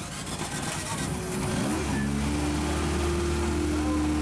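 Car engine revving briefly, then running at a steady pitch from about halfway through.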